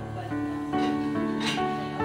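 Music led by a guitar, a slow run of held notes that change about twice a second, with a light strum about one and a half seconds in.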